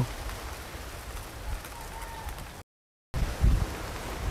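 Faint outdoor background hiss with low wind rumble on the microphone. A little before three seconds in it drops to complete silence for about half a second, then the same faint background returns.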